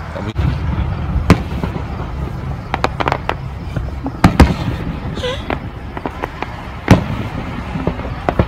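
Sharp pops or cracks, about six at uneven intervals, the loudest about a second in, around four seconds in and near the end, over a steady low rumble.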